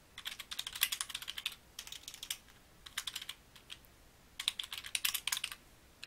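Typing on a computer keyboard: quick runs of keystrokes in about four bursts with short pauses between them, the longest pause, about a second, just after the middle.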